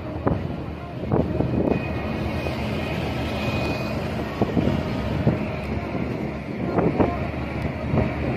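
Hino truck's diesel engine running as the truck drives close past, with a steady rumble of engine and road noise.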